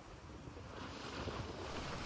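Faint, steady rush of a pickup truck's tire rolling through wet slush and snow, growing a little louder over the two seconds.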